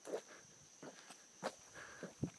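Soft footsteps on a paved road, a few quiet steps roughly two-thirds of a second apart, over a faint steady high-pitched tone.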